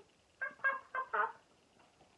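A woman's voice going 'boing' four times in quick succession, one short pitched 'boing' about every quarter second, for a kangaroo's hops.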